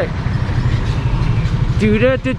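A motor vehicle's engine running close by, a low rumble with a fast even pulse, as a pickup truck drives past.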